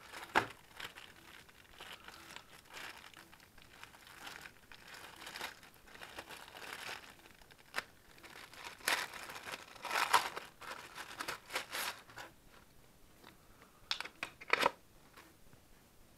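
Thin clear plastic bags around phone cases crinkling and rustling as they are handled and pulled open, in irregular bursts. The busiest stretch is about nine to twelve seconds in, and there are two sharp crackles near the end.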